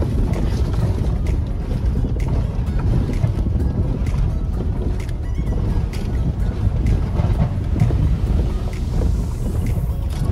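Cab noise of a truck crawling over a rough, rocky dirt road: a loud, steady low rumble of engine and tyres, with frequent clicks and rattles as the truck jolts over the stones.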